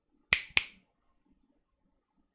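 Two sharp clicks in quick succession, about a quarter of a second apart.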